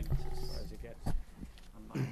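A voice holding a drawn-out hesitant "uhh" into a meeting-room microphone, with a short knock on or near the microphone about a second in, over a low steady hum.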